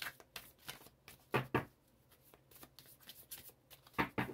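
Tarot cards being shuffled and handled by hand: a run of soft papery clicks and riffles, with two louder snaps close together about a second and a half in.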